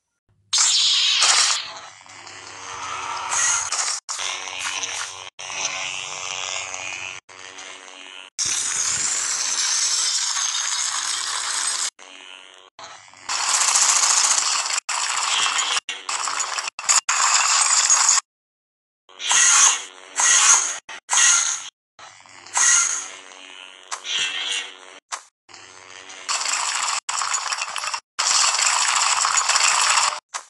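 A string of dubbed battle sound effects, loud and noisy, cut in and out abruptly with short gaps of dead silence between clips.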